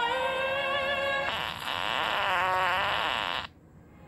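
Operatic singing from a TV advert's soundtrack, played back through a screen's speaker: a long note held with a strong vibrato, growing fuller about a second in, then cutting off suddenly about three and a half seconds in.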